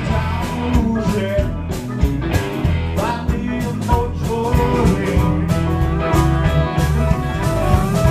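Live electric blues band playing: electric guitars, bass guitar and drums keep a steady groove, while an amplified blues harmonica, cupped against the microphone, plays a lead line with bent, sliding notes.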